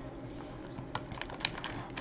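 Faint, scattered small clicks and crinkles of fingers handling a plastic candy bag.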